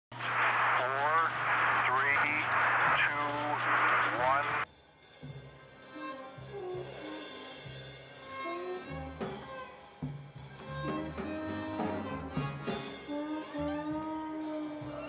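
A loud, noisy burst with wavering voices for the first five seconds or so, cutting off suddenly. Quieter bowed-string music led by violin follows, its notes changing and building toward the end.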